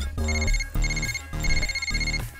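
Mobile phone ringtone for an incoming call: a high electronic tone sounding in three short bursts, over a low steady drone.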